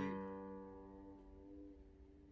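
Acoustic guitar's final strummed chord ringing out and slowly fading away at the end of a song.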